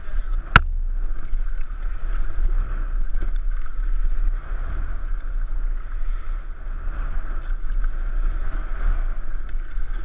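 Steady rush of river water around a paddled raft, with wind rumbling on the camera microphone and a sharp knock about half a second in.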